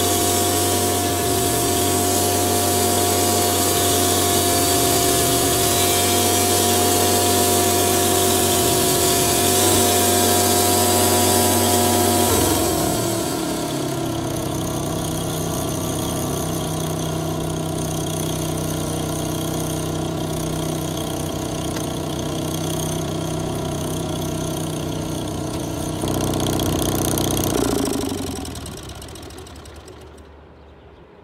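1987 Wood-Mizer LT40 band sawmill finishing a cut through a maple log: the blade and engine run under load with a steady whine. About twelve seconds in the cut ends and the engine runs on lighter and quieter, rises briefly a couple of seconds before the end, then winds down as the mill is shut off.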